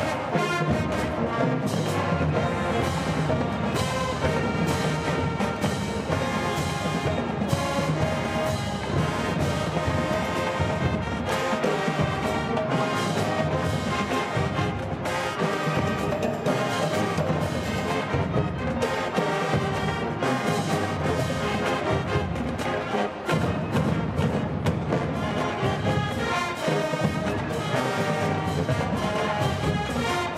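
A high school marching band playing a groove-based number: brass section over a steady, driving beat of marching drums.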